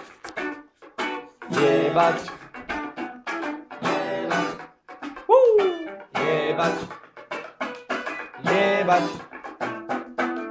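Guitars strumming short chord stabs in a loose funk groove, a burst about every two seconds, with a short pitch-sliding whoop, rising then falling, about five seconds in.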